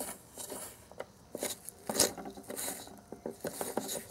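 A tiny plastic spoon stirring and scraping a damp, crumbly Konapun powder mixture in a small plastic cup: irregular scratchy scrapes and light ticks, the loudest about two seconds in.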